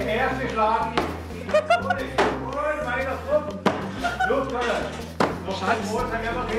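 Claw hammer striking a wooden door frame four times, roughly a second and a half apart.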